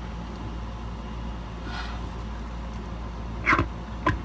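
Sound picked up by a small microphone placed inside the ear: a steady low rumble, then a short loud crackle of clicks about three and a half seconds in.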